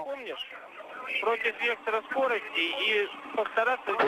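Only speech: a man's voice over a spacecraft-to-ground radio link, thin and cut off in the highs, with faint hiss above it.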